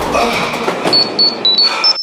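Rustling noise, then a quick run of about six short, high-pitched electronic beeps, slightly varying in pitch, starting about a second in.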